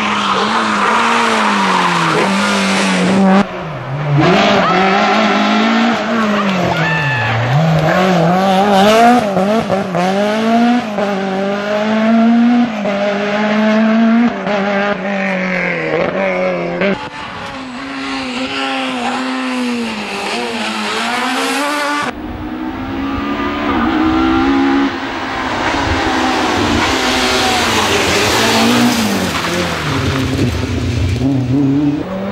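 Rally cars at full effort on a tarmac stage: engines revving hard, pitch climbing and dropping again and again through gear changes and braking for bends. The sound breaks off abruptly three times as one car gives way to the next.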